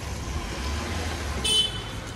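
Small hatchback's engine running at low revs as it moves off slowly, with a short horn toot about one and a half seconds in.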